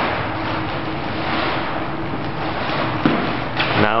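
Rustling of the pop-up tent's fabric as the folded tent is pressed flat and its rings pushed together, over a steady hiss.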